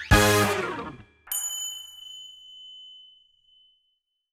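Short intro jingle: a musical chord that dies away within a second, then a single bright chime ding about a second in that rings out for about two seconds.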